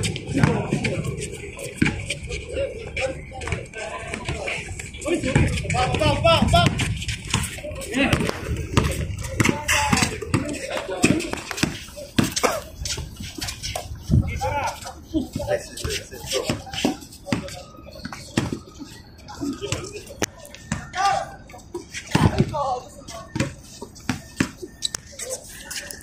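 Players' voices calling out during a basketball game, with scattered sharp knocks of a basketball bouncing on the hard court.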